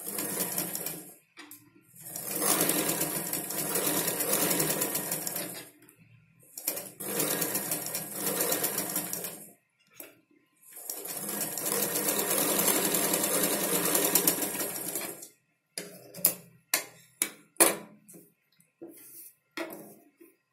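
Domestic sewing machine running in stretches of a few seconds, stitching a neck-design pattern piece onto fabric along a curved line. Near the end it runs in several short stop-start bursts.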